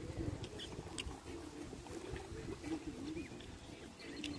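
Faint outdoor ambience while walking: uneven wind rumble on the microphone, a few short high bird chirps, and a faint, distant wavering voice.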